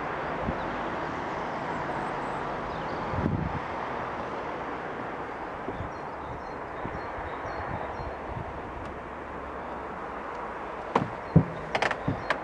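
Steady outdoor background noise with no clear source, and a few sharp knocks about a second before the end.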